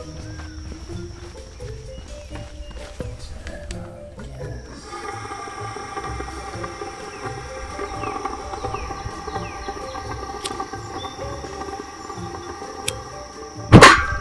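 Background music, with a couple of faint clicks, then about a second before the end one loud sudden bang: gas that has built up around a skottelbraai's burner igniting all at once in a flare-up.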